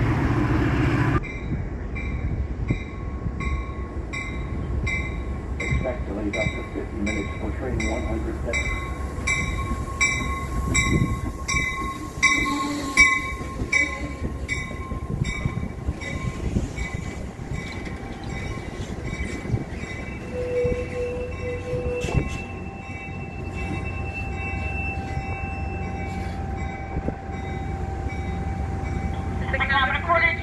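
A train's locomotive bell ringing steadily, about one and a half strikes a second, over a low rumble. The ringing stops about two-thirds of the way through.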